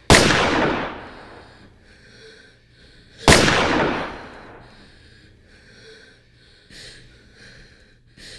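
Two handgun shots about three seconds apart, each a sharp crack with a long fading boom. Breathing can be heard between and after them.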